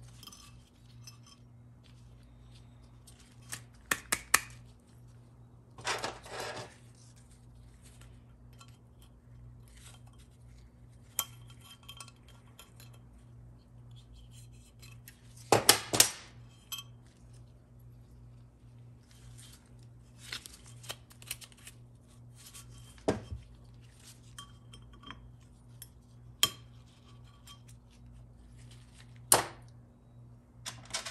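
Scattered metallic clinks and knocks as steel valves, springs and tools are handled against the aluminium casting of a Ford 4R100 auxiliary valve body on a metal workbench. They come a few at a time, with the loudest cluster about halfway through, over a faint steady low hum.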